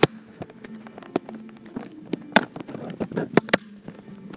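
Irregular sharp clicks and knocks, the loudest about two and a half seconds in and a quick pair near the end, over a faint low steady hum.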